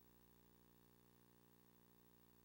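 Near silence: a faint, steady hum with no other sound.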